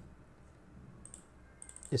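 A few faint computer mouse clicks: one pair about a second in and several more near the end.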